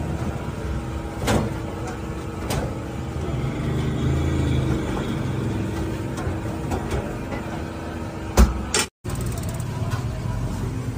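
Steady low rumble with a faint hum running through it, broken by a few light clicks and one loud knock about eight seconds in, followed by a brief dropout.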